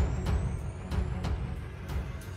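Logo intro music: deep drum hits about three a second over heavy bass, with a thin whistle-like tone rising steadily in pitch through it.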